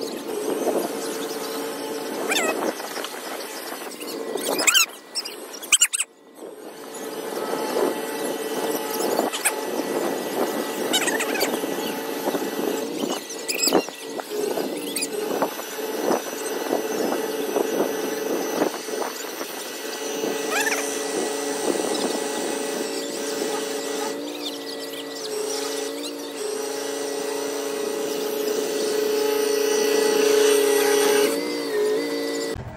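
A flatbed tow truck's winch and engine working under load to drag a mud-stuck Chevrolet Equinox up onto its bed: a steady, high squealing whine that grows louder over the last ten seconds.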